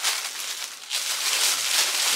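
Thin clear plastic bag crinkling and rustling steadily as a boot packed in it is handled and pulled out.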